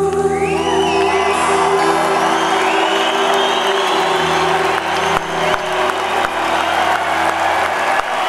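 A live band's final chord held and ringing while an arena crowd cheers and whoops over it; the chord dies away near the end as the cheering turns to applause.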